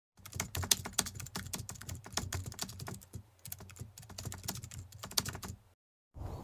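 Computer keyboard typing: a quick, irregular run of key clicks, several a second, that stops abruptly shortly before the end. It serves as a typing sound effect under a caption being typed onto a black screen.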